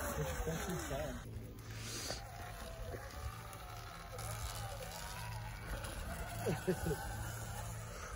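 Faint voices over a low, steady background hum, with a sudden change in the sound about a second in where the video cuts.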